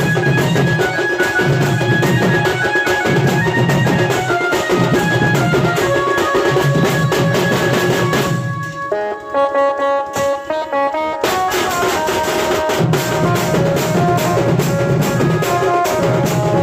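Street band of slung barrel drums and hand cymbals playing a fast rhythm under a reedy wind-instrument melody over a held drone. About eight and a half seconds in, the drums drop out for nearly three seconds while the wind melody plays alone, then the drums come back in.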